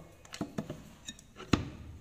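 Light knocks and taps from a loose woofer driver being handled against a speaker cabinet's front panel, with one sharper knock about a second and a half in.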